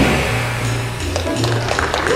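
Jazz rhythm section playing: an upright double bass sounds steady low notes and a piano adds chords after the saxophone stops right at the start.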